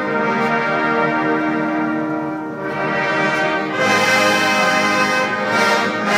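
Massed military brass band playing held chords, with trombones and trumpets to the fore. The sound thins briefly about two and a half seconds in, then the band comes in louder and brighter about four seconds in.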